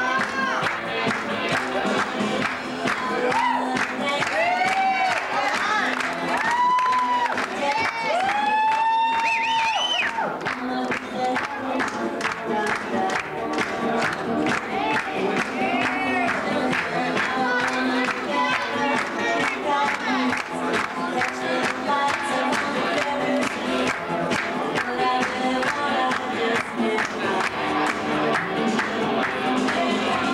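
Music with a steady beat and an audience cheering over it; several long rising-and-falling whoops stand out in the first ten seconds.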